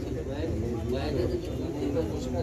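Indistinct voices of several people talking, muffled and unintelligible, with no sharp sounds.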